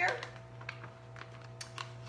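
Light, irregular clicks and crinkles from a plastic resealable pouch being opened and handled, over a steady low hum.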